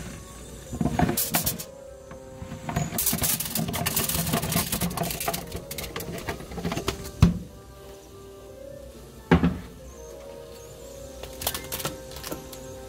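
Background music with steady held notes, over irregular knocks and clatters of raw pumpkin chunks being dropped onto a plate inside a pot; the loudest knocks come about seven and nine seconds in.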